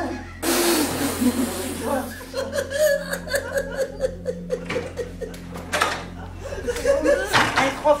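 Group laughter and excited voices after a prank scare, opening with a sudden loud outburst about half a second in.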